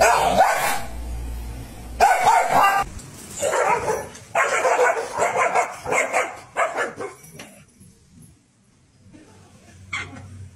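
Dogs barking in runs of short, repeated barks, with a near-quiet stretch after about seven and a half seconds.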